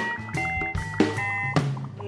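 Live band playing, with sustained notes and four sharp percussion hits about half a second apart.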